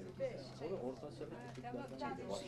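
Faint low voices with a pigeon cooing, over a steady low hum.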